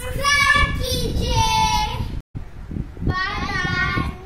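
Young girls singing in high voices with long held notes. The sound cuts out completely for a moment a little past two seconds in.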